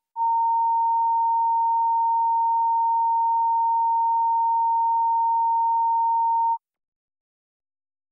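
Electronic line-up test tone on a broadcast feed: one steady pure pitch that cuts off abruptly about six and a half seconds in.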